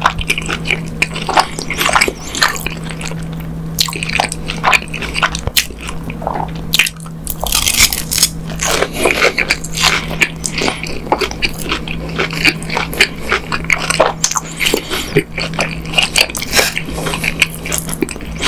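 Close-miked chewing of a bitten breaded Korean hotdog with sausage and cheese inside: a rapid run of crunchy, moist mouth clicks, thickest about halfway through.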